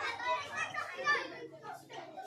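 Children's voices chattering in the background, faint and fading somewhat after the first second.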